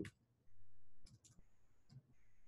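A few faint clicks of computer keys, spaced apart, as typing into a browser address bar begins, over a faint low hum.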